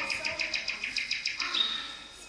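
High bird-like warbling trill of rapid pulses, about ten a second, fading near the end.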